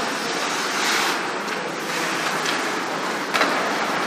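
Ice hockey rink noise during play: a steady hiss of skates on the ice under the hall's crowd noise. It swells about a second in, and a sharp knock comes near the end.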